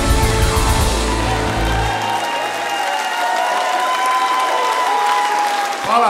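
A live rock band's final chord ringing out, its bass and drums cutting off about two seconds in, while a crowd applauds throughout.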